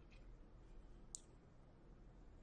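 Near silence: room tone, with one short click about a second in.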